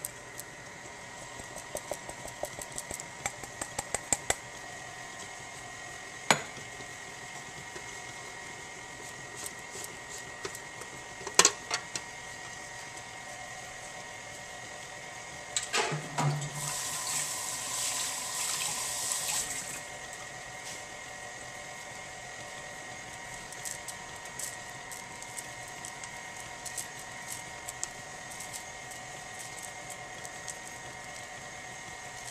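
KitchenAid stand mixer running steadily, its beater working thick cake batter in a steel bowl, with scattered light clicks and two sharp knocks about six and eleven seconds in. From about fifteen to nineteen seconds in, a louder rushing hiss rises over the motor.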